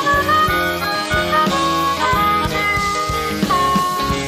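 Live blues band playing, with a harmonica playing held notes over guitar, bass and drums.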